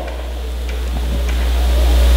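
A deep steady hum or rumble that grows gradually louder, with faint gym crowd noise and a few soft ticks above it.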